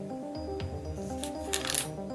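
Background music plays throughout, and a bit past the middle a brief, bright crinkle of a plastic sweets bag being handled sounds over it.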